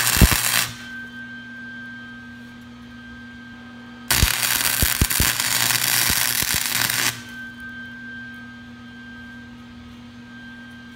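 Lincoln Electric Weld-Pak 125 HD wire-feed welder arc crackling as a steel patch is welded onto a cracked Jeep Cherokee exhaust manifold: a short burst at the very start and a steady three-second burst from about four seconds in. A steady hum runs between the bursts.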